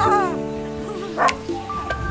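Background music of steady held chords, over which a dog gives a short whine at the start and a single sharp bark a little past a second in.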